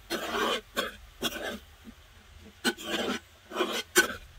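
A spoon scraping against a wide pot as dry banana blossom stir-fry is stirred, in about seven short scraping strokes with a pause of about a second midway.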